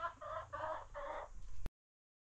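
Chicken clucking, about four short clucks in quick succession, before the sound cuts off abruptly.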